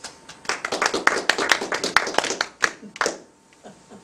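A small group of people clapping by hand, a few scattered claps at first, then a steady round lasting about two and a half seconds that stops just past three seconds in.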